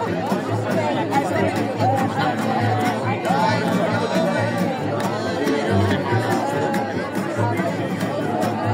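A small acoustic street band playing live: violin melody over strummed acoustic guitar and a steady line of plucked upright double bass notes. People chatter close by over the music.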